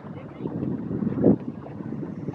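Wind buffeting the microphone, an uneven low rumble with a louder gust a little over a second in.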